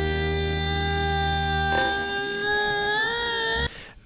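A male singer holds one long high note over a low backing note, which drops out about two seconds in; near the end the held note slides upward, then cuts off suddenly.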